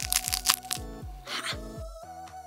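Crisp monaka wafer shell of a Choco Monaka Jumbo ice cream sandwich cracking and crunching as it is broken apart by hand, a quick run of cracks in the first second. Background music with a steady beat plays under it.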